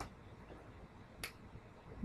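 Quiet room with two short, sharp clicks: one at the start and one just over a second in.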